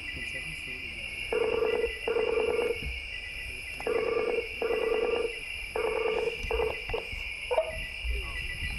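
A video-call ringing tone, a short warbling tone sounding in pairs three times, the last pair cut short as the call connects. Under it, a steady chorus of night insects, heard from the film's soundtrack as it plays.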